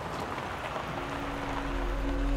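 A hissing, rain-like noise, then a sustained low suspense-music drone swells in about a second in, with a deep rumble beneath it.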